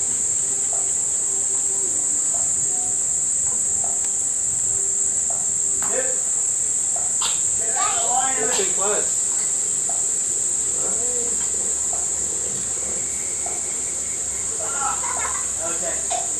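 A steady, high-pitched chorus of insects, unbroken throughout. Voices are heard briefly through it about halfway in and again near the end.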